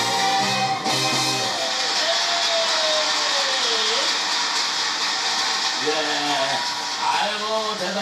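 A live band and singer end a song about a second in; a held note slides down and fades out around four seconds in, over a large crowd cheering and applauding. Near the end a man starts speaking.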